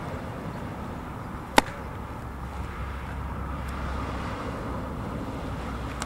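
One sharp, loud pop about a second and a half in: a softball smacking into a catcher's leather mitt, with a faint second tap a couple of seconds later, over a steady low outdoor rumble.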